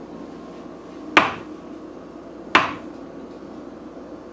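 Chinese cleaver cutting down through tofu onto a wooden cutting board: two sharp knocks, about a second and a half apart.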